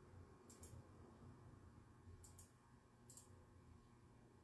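Near silence: quiet room tone with three faint, short double clicks, about half a second in, just after two seconds in, and about three seconds in.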